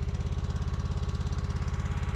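Craftsman snowblower's small engine running steadily, with an even, rapid pulse.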